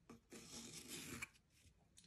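Faint scratching of a pencil tip on fabric as it traces around the edge of a wooden disc, dying away about halfway through.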